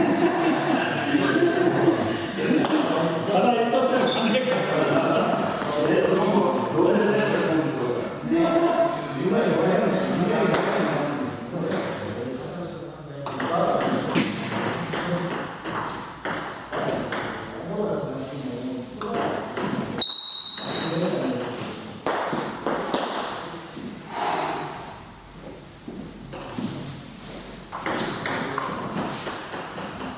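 Table tennis ball clicking off paddles and the table in short rallies, under indistinct talking. Two brief high beeps partway through.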